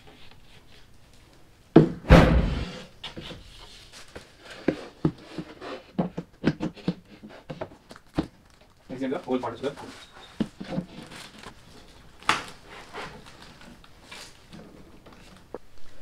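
Flat-pack table boards being handled and fitted into the frame: knocking and light scraping of board against board, with one loud, deep thud about two seconds in and a few sharper knocks later.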